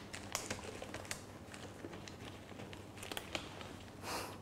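Examination gloves being pulled on over the hands: faint, scattered small clicks and crinkles of the glove material.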